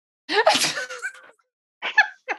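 A woman sneezes once: a sudden, sharp burst about a quarter second in that fades away over about a second.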